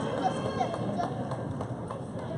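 Gymnasium ambience during a basketball game: spectators chatting in the stands, with a few scattered footfalls of players running on the court.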